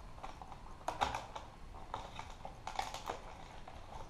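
Light, irregular clicks and rustles of a fishing lure and its plastic packaging being handled by hand, with a few clusters of small taps.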